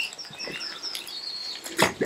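Small birds chirping in a run of short high notes, one held a little longer about a second in. Near the end, a single sharp splash as a released brown trout kicks away into the water.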